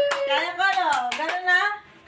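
Children calling out and squealing excitedly, with several sharp hand claps as hands slap together grabbing at falling banknotes; the noise stops abruptly shortly before the end.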